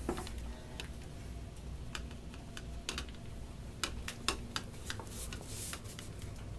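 A plastic sock aid clicking and scraping irregularly as its cords are pulled to draw a sock over the foot, with a short rustle about five seconds in.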